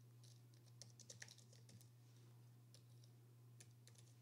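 Faint typing on a computer keyboard: a quick run of key clicks in the first two seconds, then a few scattered keystrokes. A steady low hum runs underneath.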